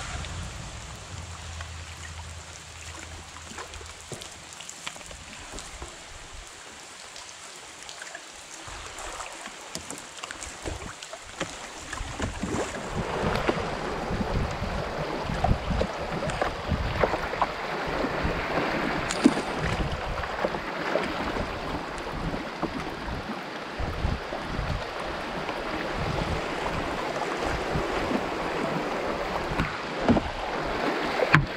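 Fast-moving river water rushing around a canoe, growing clearly louder about twelve seconds in as it runs through a quick, choppy riffle. A low steady hum fades out in the first few seconds.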